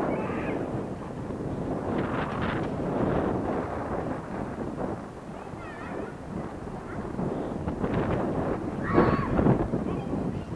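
Wind buffeting an outdoor microphone, a continuous rough rumble, with a few brief rustles or knocks about two seconds in and again near the end.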